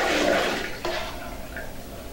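Milk sloshing and splashing in a large aluminium pot, loudest in the first second and then softer.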